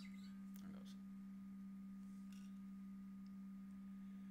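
Near-quiet room with a steady low hum on one pitch and a fainter higher tone above it, plus a few faint soft clicks.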